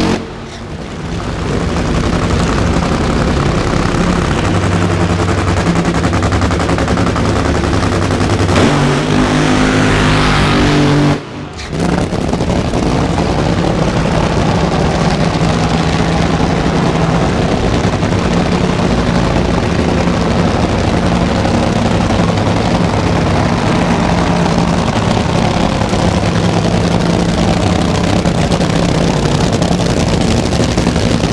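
Supercharged nitro-burning V8 engines of two Funny Cars running very loud at close range through staging and a side-by-side launch. The sound cuts out briefly about eleven seconds in, then stays loud.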